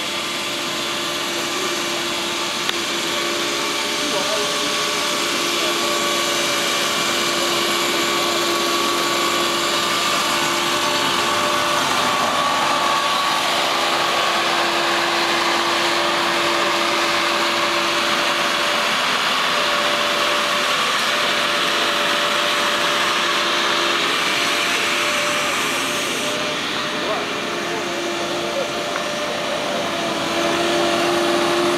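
Jacobsen five-unit reel fairway mower running steadily with its cutting reels spinning: a continuous drone with a held hum, growing a little louder in the first few seconds as it comes closer.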